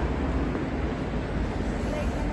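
Steady outdoor street noise: a low rumble with an even hiss above it.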